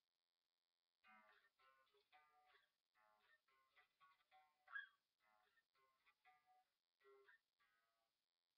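Stratocaster-style electric guitar played quietly: a single-note riff picked on the low E string at frets 4-8-10, 4-8-11-10, 4-8-10-8-5, about three short notes a second, starting about a second in.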